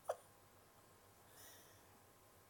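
Near silence, broken right at the start by one short squeak that falls quickly in pitch.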